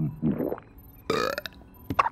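Comic cartoon burps from an animated monkey character: a low burp at the start, then a second, brighter burp about a second in, and a short sharp vocal blip at the end.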